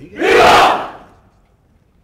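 Massed shout of '¡Viva!' from the ranks of soldiers and oath-takers, shouted in unison as one loud cry lasting about a second, ringing off and dying away. After it, only faint stray knocks.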